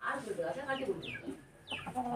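Chickens clucking quietly, mixed with faint voices, after a loud crow has ended.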